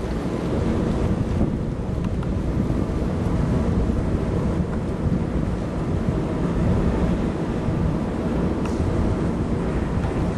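Wind buffeting the microphone aboard a moving boat: a steady, rumbling rush, mixed with the boat's own running noise and water.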